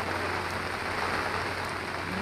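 Steady, even background noise like a hiss or rush, with a constant low electrical hum underneath.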